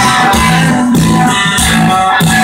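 Live rock band playing through a concert PA, with electric guitars, bass and drums on a steady beat, heard loudly from within the audience.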